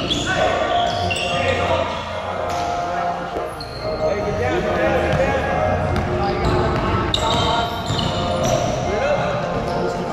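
Basketball game on a hardwood gym floor: a ball bouncing as it is dribbled, sneakers squeaking in short high chirps, and players' indistinct shouts, all echoing in a large gym.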